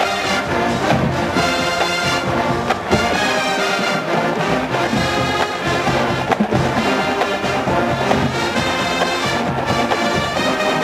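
A large college marching band playing live: massed brass, including trombones and trumpets, over drum hits, steady and loud.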